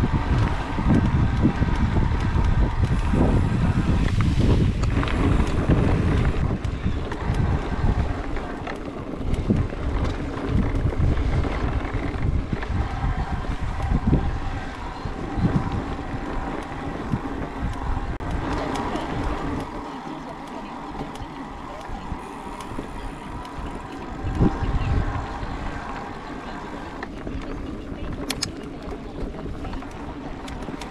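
Mountain bike riding over a rough dirt track: rumble and rattle of the bike and tyres over the bumpy ground, mixed with wind on the microphone. It is loudest for the first several seconds and quieter after.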